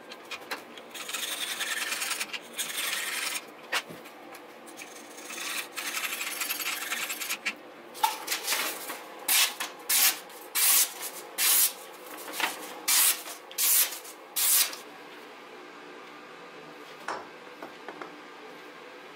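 Knife edge being sharpened on a guided fixed-angle sharpener, the stone drawn back and forth along the blade in two stretches of steady scraping strokes. Then about ten quick swishing slices as the sharpened blade cuts through a sheet of paper, before a faint steady hum remains.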